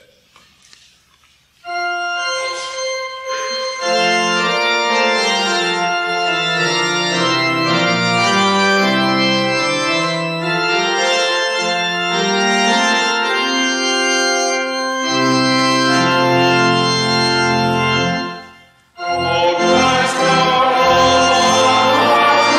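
Church organ playing a hymn in held chords, most likely the introduction before the congregation sings. It starts about a second and a half in, stops briefly near the end, then goes on.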